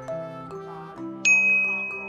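A single bright ding, like a notification chime, about a second in, ringing on as it fades, over light background music. It marks the online order going through.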